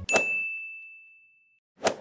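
A single bright ding, like a small bell struck once, ringing out and fading over about a second and a half. A short burst of noise comes just before the end.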